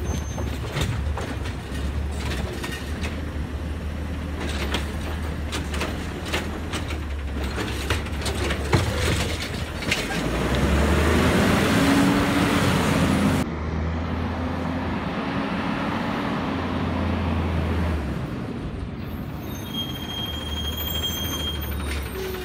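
Heil automated side-loader garbage truck's diesel engine running as it pulls up to the carts. About ten seconds in the engine gets louder for a few seconds, then settles into a steady hum until about eighteen seconds, and a brief high brake squeal comes near the end.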